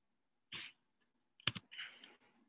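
Two quick, sharp clicks of a computer keyboard key about one and a half seconds in, with soft hissy sounds before and after.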